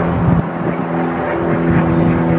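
A motor running steadily at a constant pitch, with a brief dip in its low end about half a second in.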